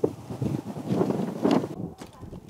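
Wind blowing across the microphone, rising and falling in gusts.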